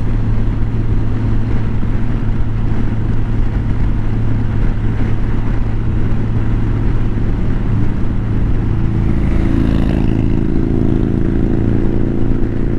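Steady drone of a 2023 Honda Gold Wing's flat-six engine, with wind and road noise, cruising at highway speed and heard from the rider's seat. A few steady higher hums join in near the end.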